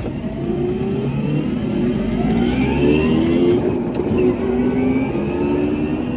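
Electric drive motor (a 144-volt Hyper9) of an EV-converted Fiat X1/9 whining and rising in pitch as the car accelerates hard, heard from inside the cabin under steady road and wind rumble.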